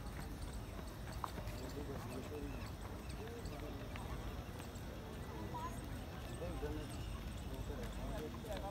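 Indistinct chatter of many people at a distance over a low steady rumble, with scattered light footfalls of runners on the synthetic track.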